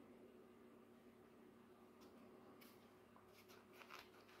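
Near silence: room tone with a faint steady hum, and a few faint soft rustles about two seconds in and near the end from fingers handling a watermelon seedling.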